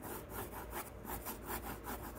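Pencil scratching on paper in quick, regular back-and-forth strokes, several a second, as fur lines are shaded in.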